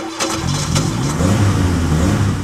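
An SUV engine starting suddenly and loudly, then running with a wavering drone as it is revved.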